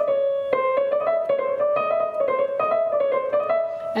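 Yamaha Clavinova CSP digital piano playing a quick passage of short notes in the middle register, with the keys set to a soft touch curve.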